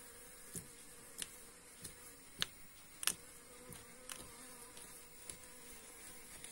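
Uncapping fork with metal tines raking wax cappings off a honeycomb frame, making short crackling ticks about every half second that are loudest in the middle. Underneath runs a faint, steady insect buzz.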